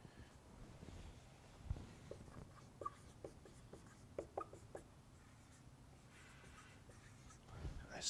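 Dry-erase marker squeaking on a whiteboard in a run of short strokes as a word is written, faint overall. A low thump comes shortly before the writing starts.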